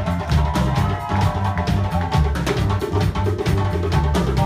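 Live band playing an instrumental passage, with the drum kit keeping a steady beat over a repeating low bass line and hand percussion.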